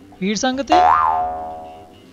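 A cartoon-style 'boing' comedy sound effect: a sudden ringing tone that bends up and back down in pitch, then fades away over about a second. A few spoken words come just before it.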